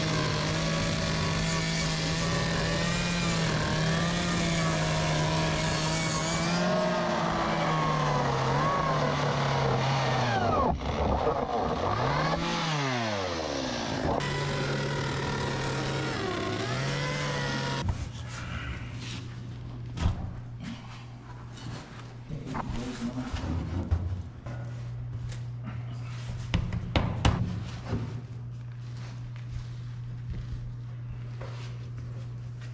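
Stihl two-stroke chainsaw running at high revs while cutting through a plastic barrel, its pitch wavering in the cut and dropping almost to idle about eleven seconds in before revving back up. It cuts off abruptly about eighteen seconds in, leaving a steady low hum with scattered knocks and clicks.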